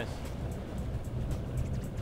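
A boat's engines running steadily under way, with the wash of water along the hull, under background music.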